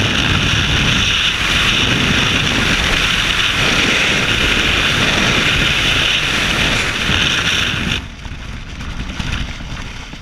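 Freefall wind rushing hard over a skydiver's camera microphone, loud and steady, dropping abruptly about eight seconds in as the parachute deploys. After that a quieter rustle with a few soft clicks as the canopy opens overhead.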